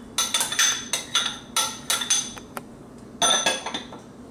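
A metal spoon knocking and scraping against a ceramic bowl as diced peaches are tipped into a stainless steel mixing bowl: a quick, uneven run of clinks. About three seconds in comes a louder ringing clatter as the emptied ceramic bowl is set down on another bowl.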